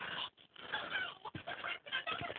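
Faint rustling and scuffing as a suede mid-top cupsole skate shoe is flexed by hand and rubbed against a bedspread, with a few small clicks.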